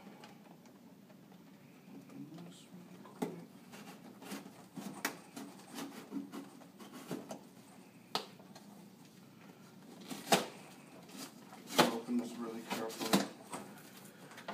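A large cardboard box being handled and its top flap worked open by hand and with a blade: scattered sharp clicks and taps of cardboard, the loudest about ten and twelve seconds in.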